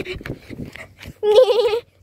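A child's short, shaky laugh, the pitch wobbling rapidly, lasting about half a second just past the middle.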